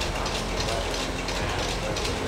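Cashew cutting machine running steadily while cutting raw cashew nuts: a continuous low rumble with a rapid mechanical clicking of its feed and blade mechanism.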